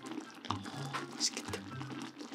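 Thick red tteokbokki sauce simmering in a shallow electric pan, bubbling with irregular soft pops as bubbles burst.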